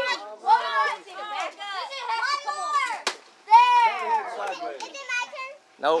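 Young children shouting and squealing with excitement, their high voices overlapping and sliding up and down in pitch. A single sharp knock about three seconds in.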